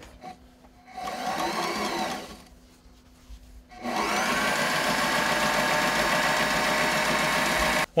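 Electric sewing machine running to sew a long, maximum-length tack stitch: a short run of about a second and a half, a pause, then a longer steady run that stops suddenly near the end.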